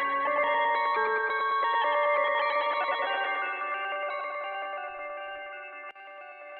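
Live electronic folk music: sustained synthesizer chords layered with electric guitar through effects and echo. A low bass tone drops out about half a second in, and the music fades over the second half.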